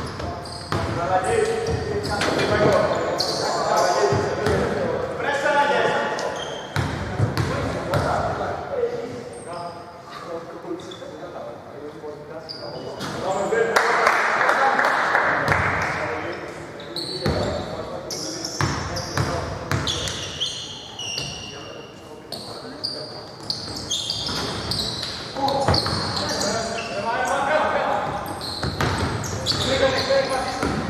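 A basketball bouncing on a hardwood court in a large, mostly empty sports hall, heard as short sharp knocks, with people talking through much of it.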